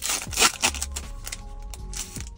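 Foil booster-pack wrapper being torn open and crinkled, a short burst about half a second in, over steady background music.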